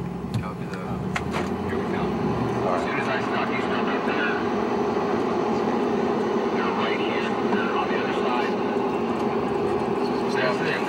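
Steady engine and road noise of a moving car, heard from inside the cabin, with indistinct voices under it.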